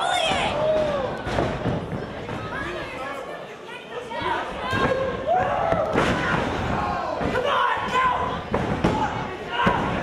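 Wrestlers' bodies hitting the canvas of a wrestling ring, with a sharp thud about six seconds in and a louder one near the end. Voices call out throughout.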